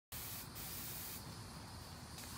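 Faint, steady spray hiss over a low rumble, a little stronger in the second half.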